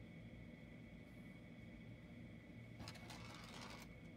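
Near silence: quiet room tone with a faint steady high hum, and about three seconds in a brief faint rustle of small plastic toy-construction pieces being handled.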